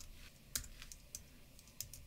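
Faint, scattered keystrokes on a computer keyboard, about half a dozen taps typing a word.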